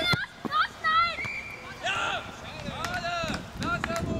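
Children's high-pitched voices shouting and calling out during a football game, several short calls one after another. A sharp thump sounds right at the start.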